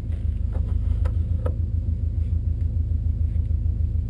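Subaru Impreza's flat-four engine idling, heard from inside the cabin as a steady, evenly pulsing low throb, with a few faint clicks in the first second and a half.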